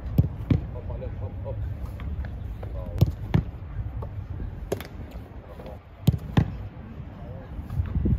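Tennis racket striking tennis balls, and the balls thudding onto the turf and the goalkeeper. The sharp knocks come several times, some in pairs a fraction of a second apart.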